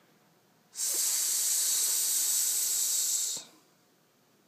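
A person's voice holding a long, steady "sss", the phonics sound of the letter s, for about two and a half seconds.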